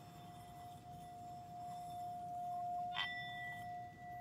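Singing bowl rimmed with a wooden striker, singing one steady tone that swells slightly. About three seconds in there is a brief clink, and a higher ringing tone joins the first as the bowl rings on.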